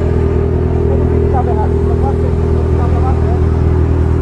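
Motorcycle engine running steadily at low revs, close up, with faint voices in the background.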